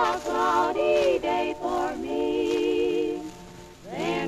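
Female vocal trio singing a verse in close harmony on a 1927 Columbia 78 rpm record, the voices moving together in parallel, with a long held note wavering in vibrato just past the middle.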